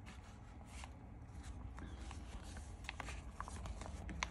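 Pages of a handmade paper bag scrapbook album being turned and handled: faint paper and cardstock rustling, with a few light clicks about three seconds in.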